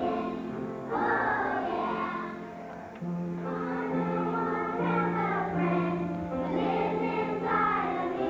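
A group of kindergarten children singing a song together as a choir, holding long notes that change every second or so.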